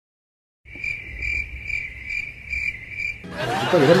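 Cricket-chirp sound effect of the kind used for an awkward silence: a steady high trill, pulsing about two or three times a second. It follows a brief moment of total silence and stops a little after three seconds in, when talking begins.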